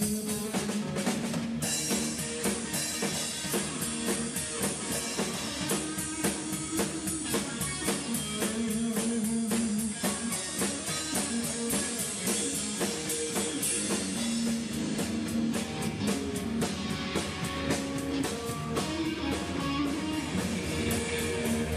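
A live rock band playing: a drum kit keeping a steady beat under electric guitar and bass guitar.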